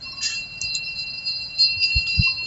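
Metal chimes ringing: a few high, clear tones that hang on, with fresh strikes about a second and a half in.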